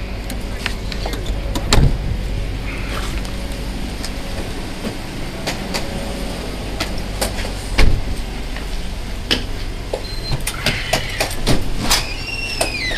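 Police patrol car running at idle with a steady low hum, under the rustling and knocking of a body-worn camera as the wearer moves. Two loud thumps about two and eight seconds in.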